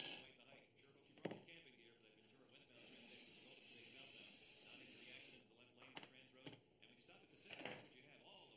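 An aerosol spray can gives one steady hiss lasting about two and a half seconds, with a few short knocks from handling before and after it.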